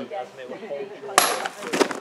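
A sword blade striking a liquid-filled plastic soft-drink bottle on a cutting stand: one sharp crack about a second in, with a brief high ring and a few lighter knocks just after.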